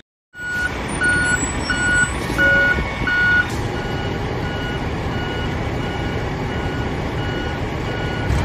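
Vehicle reversing alarm beeping in an even rhythm, a little under two beeps a second, over the steady rumble of a truck engine. The beeps are loud for the first few seconds and fainter after that.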